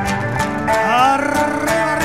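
Live Argentine folk band playing a gato on acoustic guitar, violin and drum kit, with a steady rhythmic beat and a melody line that slides upward about a second in.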